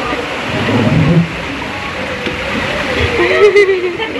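Water rushing steadily into the entrance of an enclosed tube water slide, with voices over it.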